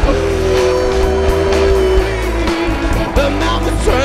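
Live blues-rock band playing loud: drums and bass driving under a long held note that bends and slides downward partway through.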